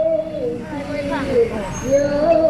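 A voice singing in long, slowly wavering notes through a minibus's horn loudspeaker, with the minibus engine running underneath as it passes.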